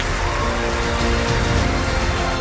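Soundtrack music over a crowd clapping and cheering, the clapping heard as a dense steady patter.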